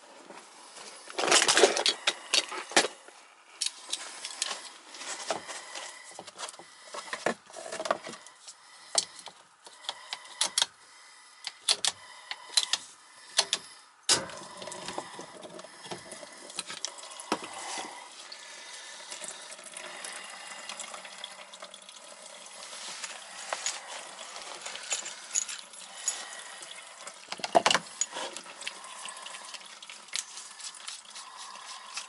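Clicks and knocks of a PVC pipe cutter being worked on a PVC condensate drain line. About halfway through, a steady run of water starts pouring from the cut pipe into the plastic drain pan: the drain line is blocked and backed up, holding water.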